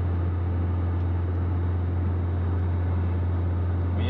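Steady low drone of engine and road noise inside the cabin of a moving Suzuki Escudo, even in level throughout.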